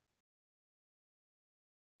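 Near silence: the audio track goes completely blank, a dead-quiet gap between remarks.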